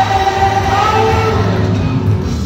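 A worship team singing a gospel song together over a PA system, voices holding long notes over a steady low accompaniment.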